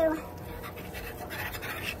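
Faint scraping of a spoon stirring a flour roux as it browns in a skillet.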